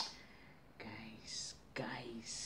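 A sharp click right at the start, then a woman speaking softly and breathily, with strong hissing 's' sounds, her voice growing fuller near the end.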